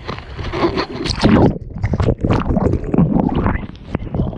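Sea water splashing and sloshing against a camera held at the waterline as surf washes over a surfboard, in irregular rushing surges with a loud peak just over a second in.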